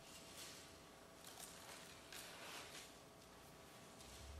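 Faint rustling of thin Bible pages being turned by hand, a few soft swishes against near silence.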